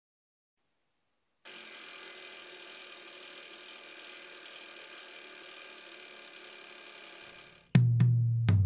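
Twin-bell mechanical alarm clock ringing steadily, starting about a second and a half in. Just before the end the ringing cuts off and a drum kit and bass guitar come in together with a loud hit.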